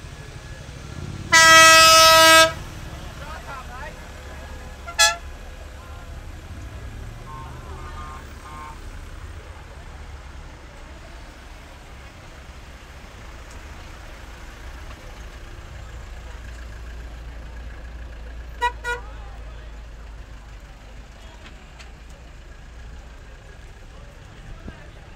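Vehicle horns honking: one long loud blast about a second in, a short toot a few seconds later, and a quick double toot later on. A low steady rumble runs beneath.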